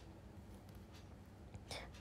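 Near silence: faint room tone with a low hum and a couple of faint ticks, then a faint whisper-like voice near the end.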